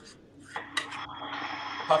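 A spoon stirring mushrooms in cream in a skillet: a few quick clicks of the spoon against the pan, then about a second of steady scraping and sizzling noise.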